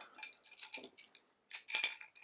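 Light metallic clinks and ticks of a 14-inch wrench against the radiator valve's union connection as it is put on and snugged up. They come in a few short clusters, the loudest near the end.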